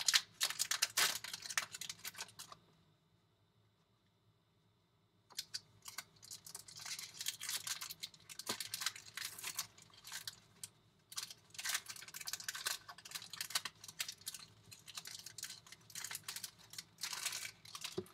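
Foil baseball card pack wrappers being torn open and crinkled by hand, a rapid patter of crackles and rustles. The sound cuts out for nearly three seconds a couple of seconds in, then resumes.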